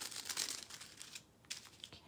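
Small plastic zip-lock bag of diamond-painting drills crinkling as it is handled; the crinkling fades after about a second, leaving a few light clicks near the end.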